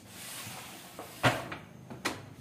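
A Canon G3020 ink-tank printer being turned round and slid on a workbench: a scraping shuffle of its plastic body against the bench, a small click about a second in, then a sharp knock as it is set down.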